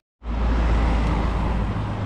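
Street traffic noise: a loud, steady low rumble with hiss, starting suddenly a moment in and easing slightly near the end.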